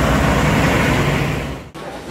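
Truck engine running close by, a steady low rumble with road noise, that cuts off abruptly near the end.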